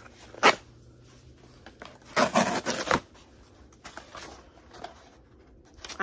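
Cardboard package being opened by hand: a sharp click about half a second in, then just under a second of ripping and rustling, with a few softer scrapes after.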